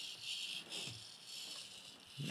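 Small hobby servo giving faint, brief high-pitched whirs as it tilts an FPV camera on a simple single-servo gimbal while the rig is moved by hand, mostly in the first second.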